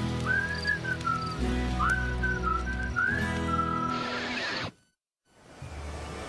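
A whistled melody over acoustic guitar and bass, the closing bars of a TV theme song. The music stops suddenly about five seconds in, and after a brief silence quieter background music begins.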